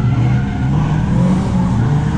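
Car engine idling steadily, heard from inside the cabin.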